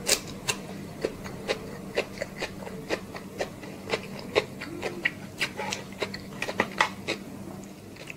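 Close-miked chewing of a mouthful of chicken biryani, with wet mouth clicks and smacks several times a second, over a faint steady hum.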